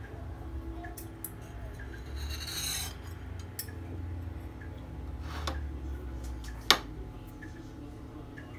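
A metal knife scraping across a ceramic plate and the crumbly biscuit base of a cheesecake, with two sharp clinks of cutlery on the plate, the second and louder one near the end.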